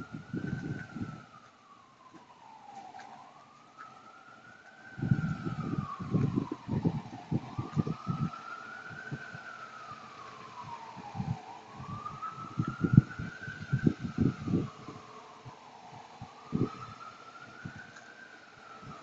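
Emergency vehicle siren sounding a slow wail, its pitch rising and falling about once every four seconds, with bursts of low rumble over it.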